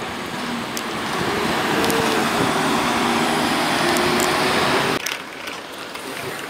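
Road traffic: a motor vehicle passing close by, its engine hum and tyre noise swelling over a few seconds. The sound cuts off abruptly about five seconds in, leaving quieter street ambience.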